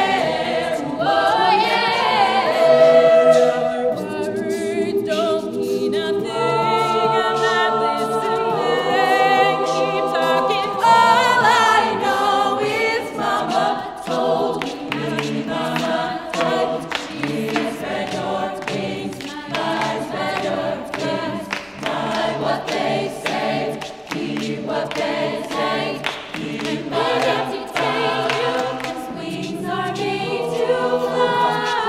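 Co-ed a cappella group singing in harmony with no instruments: held chords in the first part, then a steady percussive beat joins the voices from about a third of the way in.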